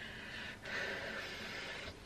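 A person breathing: a faint breath, then a longer, louder one of more than a second that stops suddenly near the end.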